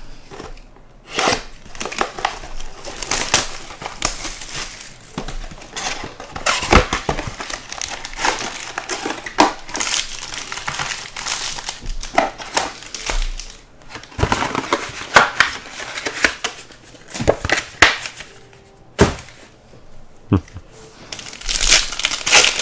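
Wrapping and cardboard of a trading-card box being torn off and handled: a long run of crinkling and crackling with sharp snaps, pausing briefly twice. Near the end a foil card pack is torn open.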